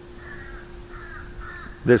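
Crows cawing: a few faint caws in a row, one after another.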